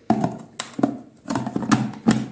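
Plastic food-processor lid being fitted onto the bowl and pressed down, giving a handful of short plastic knocks and clicks.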